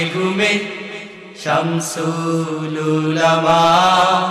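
Bengali Islamic devotional song sung solo in a chanting style: the singer holds long drawn-out notes, dips briefly, and starts a new sustained phrase about one and a half seconds in.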